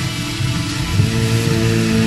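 Music from an amateur-produced track, with a steady low pulse; held, sustained notes come in about a second in.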